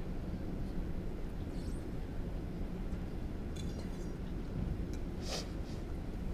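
Steady low hum and rumble of a large indoor sports hall, with a few faint ticks and a brief hiss-like sound about five seconds in.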